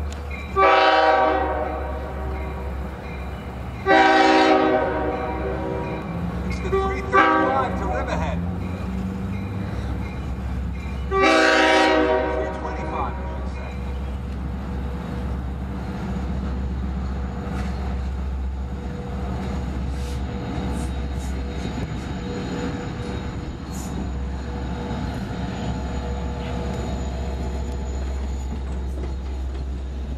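LIRR DE30AC diesel-electric locomotive sounding its horn in the grade-crossing pattern, long, long, short, long, each blast a chord of several tones, over the steady low rumble of its diesel engine. After the last blast the locomotive and its coaches roll on past with the engine still running and scattered wheel clicks on the rails.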